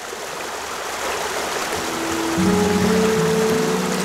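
Small stream rushing over stones, growing louder, with background music of long held notes coming in about two seconds in.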